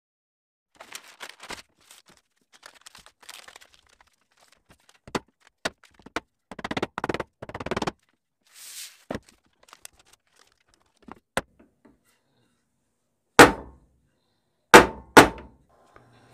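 Freezer paper rustling as it is folded over a wooden frame, with scattered small clicks, then a hand staple gun firing three loud snaps near the end, the last two close together.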